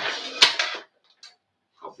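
A short kitchen clatter of a pan being fetched, lasting under a second, with a sharp knock about half a second in.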